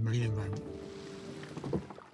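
A man's voice draws out the end of a word, then soft background music holds a steady sustained note for about a second.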